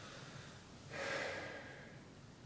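A person taking one audible breath, starting suddenly about halfway through and fading within a second.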